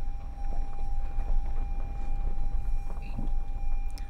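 Low steady road rumble inside a car moving slowly, with a thin steady tone running over it.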